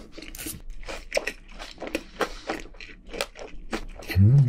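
Close-up chewing of a mouthful of crunchy food, with irregular crisp crunches a few times a second.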